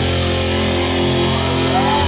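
Live rock band playing loud, with electric guitars ringing out held chords.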